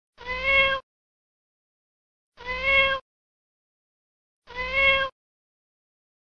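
A domestic cat meowing three times, about two seconds apart; each meow is short, rises slightly in pitch and then holds, and all three sound the same.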